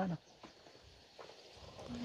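A person's voice trails off at the start and starts again near the end, with a quiet pause between that holds only a few faint clicks.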